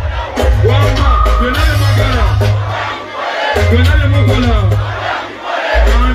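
Loud live music over a PA with a heavy bass line, a performer shouting into a microphone and a crowd yelling along. The bass cuts out briefly twice, just past the middle and near the end.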